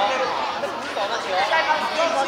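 Several children's voices chattering and calling out at once, overlapping.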